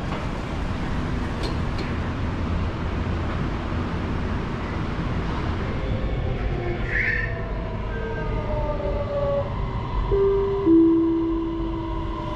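Electric metro train running, heard inside the passenger car: a steady rumble of wheels on track, with motor whine in sliding tones in the second half. Near the end comes a two-note chime, a higher tone then a lower one, the loudest sound here.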